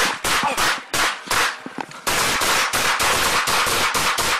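Rapid volley of police handgun fire from two officers: a string of separate, quick shots in the first second and a half, then a dense run of closely spaced shots for nearly two seconds, picked up close on an officer's body camera.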